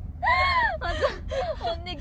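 Women laughing: one high, squealing laugh that rises and falls in pitch, then short broken laughs. A low, steady hum of the van's cabin runs underneath.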